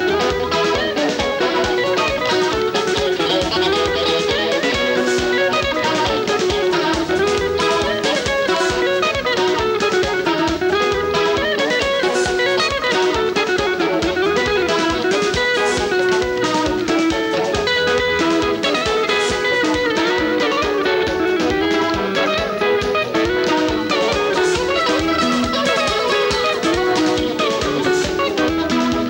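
Live African dance band playing an instrumental dance section: interlocking electric guitar lines over a steady drum-kit beat and bass guitar, with no singing.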